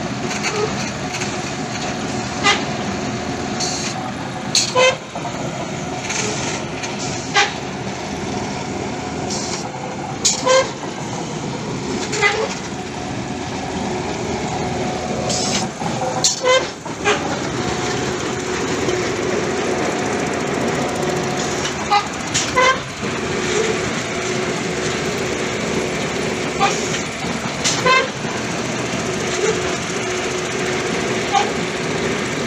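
Pile-drilling rig and site machinery running steadily, with short sharp metallic clanks every couple of seconds.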